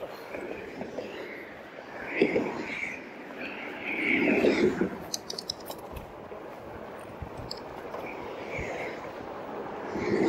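2018 RadRover electric fat-tire bike riding along concrete pavement: a steady bed of tyre and wind noise, with a short run of rattling clicks about halfway through.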